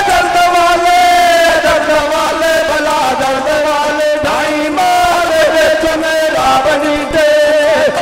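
A male voice sings a bait, a Punjabi/Saraiki Sufi devotional verse, through a microphone and PA, chanting in long, held, wavering notes.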